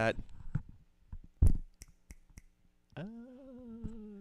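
Headset microphone being handled, possibly at its mute switch: a scatter of small clicks and taps with one louder knock about a second and a half in.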